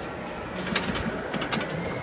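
Wheel of Fortune pinball machine in play: a few sharp clacks of the ball and flippers about halfway through, over the low background din of an arcade.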